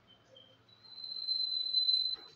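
A high, steady whistle-like tone that swells in loudness for about a second and a half, after a couple of faint short chirps.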